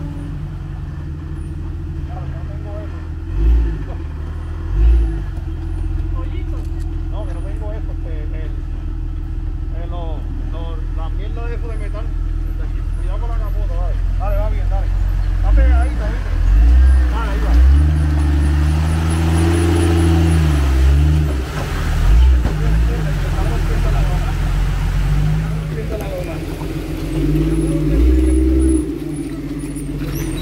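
Jeep Cherokee XJ engine running low and steady as it crawls through a deep muddy rut, with two short thumps a few seconds in, then revving in repeated surges in the second half as the driver works it through.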